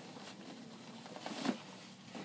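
Cotton drapery fabric rustling as a large lined panel is lifted and shaken out, with a louder swish about a second and a half in.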